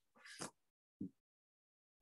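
Near silence, broken by a faint short sound about a quarter of a second in and a briefer one about a second in.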